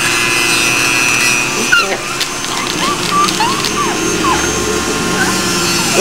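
Corded rotary nail grinder running against a small dog's toenails, a steady high whine that stops about two seconds in. A few short, high squeaky sounds follow.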